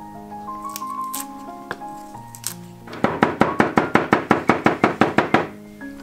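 A kitchen cleaver chopping fast on a wooden chopping block: about halfway in, a quick, even run of sharp strokes, about six a second, lasting some two and a half seconds. Background music plays throughout.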